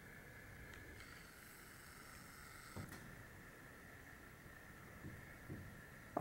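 Near silence: faint room tone with a steady high hum, and a few soft taps and faint scratching of a dry-erase marker writing on a whiteboard.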